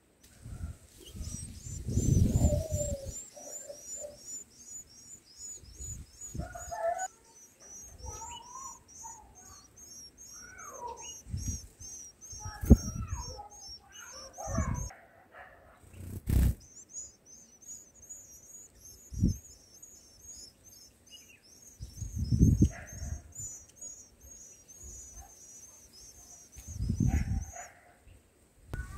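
Rapid, high-pitched chirping, several notes a second in an even series, pausing briefly about halfway through. Scattered lower chirps and a few low thumps come in between.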